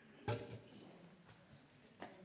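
Two knocks from a small wooden step box on the floor as it is put in place and stood on: a sharp, louder knock about a quarter second in and a smaller one just after.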